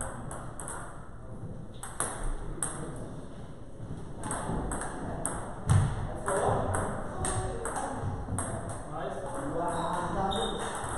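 Celluloid-style table tennis ball clicking sharply off rubber paddles and the table in quick runs of hits during rallies, with a short pause about a second in. A voice is heard about six seconds in.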